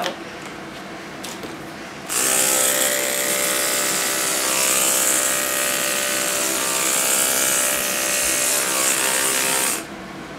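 Electric dog grooming clippers buzzing steadily as they shave down the fur on the top of a Brittany spaniel's head. The buzz starts about two seconds in and stops abruptly just before the end.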